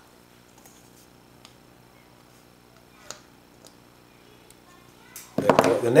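A few faint, sharp snips of flush side cutters cutting small burrs off a plastic model kit part, spaced a second or so apart, the loudest about halfway through, over quiet room tone.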